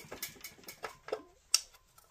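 A few light, uneven clicks and ticks as a screwdriver is worked inside a Predator 212cc engine's crankcase, lifting the camshaft so it will drop in and the crankcase cover can seat.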